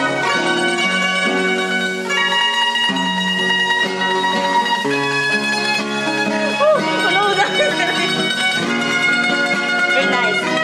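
A Filipino bandurria, a small pear-shaped many-stringed lute, playing a plucked melody over classical guitar chords, as a live duet. The notes and chords change about every second.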